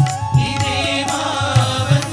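Indian devotional song: a wavering, ornamented melody line over tabla drum strokes and a steady drone.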